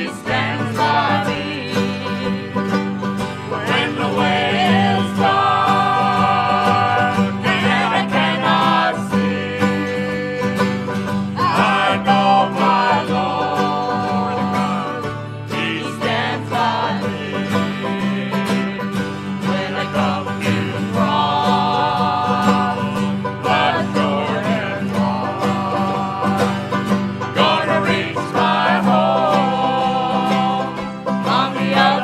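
Live bluegrass-style gospel music: acoustic guitars and other plucked string instruments play steadily under a group of voices singing in harmony.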